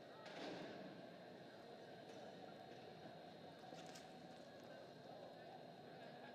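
Faint indoor arena ambience, close to silence: a low steady murmur under a thin steady high hum, with a brief swell about half a second in.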